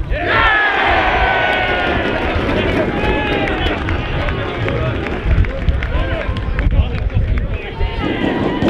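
A small football crowd and players cheering and shouting as a penalty goes in: a burst of many overlapping voices just after the start, loudest in the first two seconds and carrying on as scattered shouts to the end, over a low rumble.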